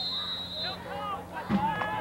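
Indistinct voices talking, with a steady high-pitched tone held through about the first second.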